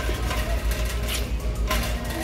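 Low rumble of a shopping cart being pushed along, with two short clicks or rattles, over faint background music.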